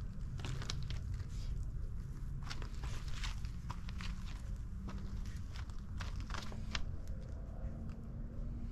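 Irregular small crunches and rustles in grass and gravel as a Shih Tzu puppy noses about close to the ground, over a steady low rumble.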